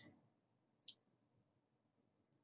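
Two short clicks of a computer mouse button about a second apart, advancing presentation slides, over near silence.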